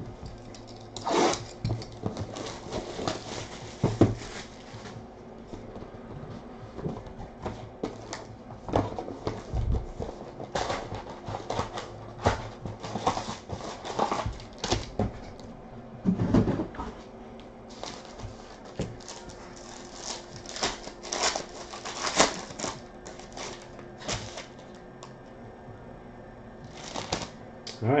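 Trading card packaging being handled: a sealed hobby box cut open, then its foil packs crinkled and torn open. The sound is a run of irregular crinkles, clicks and rustles, with a busier stretch near the end as a pack is ripped.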